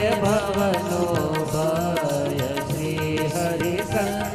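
Instrumental interlude of a devotional kirtan between sung verses: harmonium and bamboo flute carry a gliding melody over tabla and hand-held wooden clappers.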